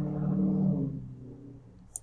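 A man's drawn-out hesitation hum, fading out over about a second and a half, then a single computer-mouse click just before the end.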